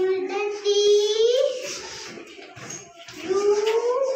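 A young child singing in slow, drawn-out notes: a long held note that rises at its end, then a pause, then a second note rising in pitch near the end.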